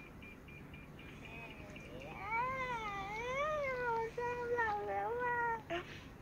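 A high-pitched, cat-like wavering call begins about two seconds in and lasts about three and a half seconds. Its pitch rises and falls in smooth waves, with a couple of short breaks.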